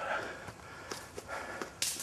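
Footsteps pushing through dense undergrowth, leaves and stems brushing, with a brief louder rush of noise near the end.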